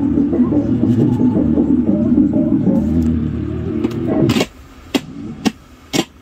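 Uher SG 561 Royal reel-to-reel tape recorder running loudly, the sound cutting off abruptly about four and a half seconds in. Three sharp clicks of its control keys and switches follow.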